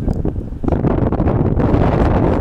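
Wind buffeting the microphone, a loud, steady rushing noise that is heaviest in the low end.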